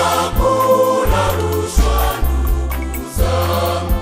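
Church choir singing a Swahili gospel song in harmony, over sustained bass notes and a steady beat.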